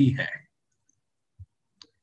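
A man's voice finishes a word in the first half-second, then near silence broken by two faint, short clicks in the second half.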